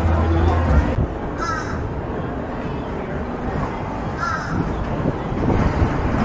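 A bird giving a short call twice, about three seconds apart, over steady background noise.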